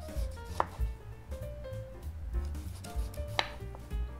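Chef's knife slicing through seared, pepper-crusted tuna and striking a wooden cutting board: two sharp knocks, about half a second in and near the end. Soft background music plays underneath.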